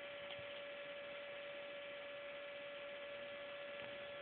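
A steady electrical hum: one even tone held throughout over a faint hiss.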